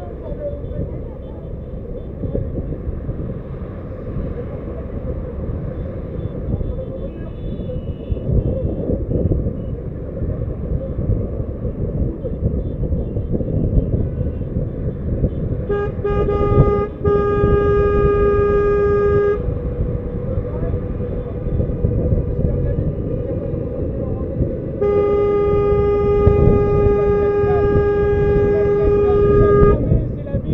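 Car horn sounding in two long steady blasts, the first of about three and a half seconds with a brief break, the second of about five seconds, over the steady road rumble of a car driving in slow traffic. A fainter, higher-pitched horn sounds briefly about eight seconds in.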